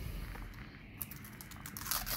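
Thin printed paper seal being peeled and torn off the top of a small plastic toy capsule: light crinkling and tearing that starts about a second in and grows busier near the end.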